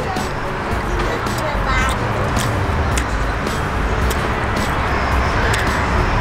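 Background music with a steady beat, over the clicks and smacks of someone chewing a burger close to the microphone.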